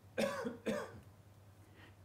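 A person clearing their throat with a short two-part "ahem", the second part about half a second after the first.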